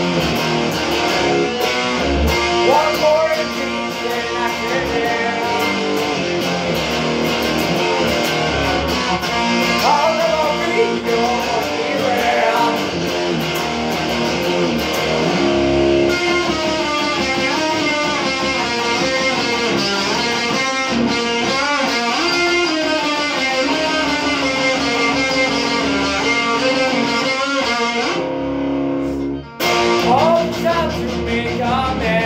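Stratocaster-style electric guitar being played: a continuous run of strummed chords and picked riffs, with a brief break shortly before the end.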